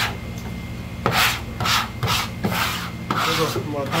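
Scraping strokes across a plastic cutting board, about five in quick succession, clearing off fish scraps after filleting.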